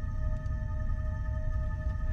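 Dark, suspenseful underscore music: a held chord of steady tones over a low rumble.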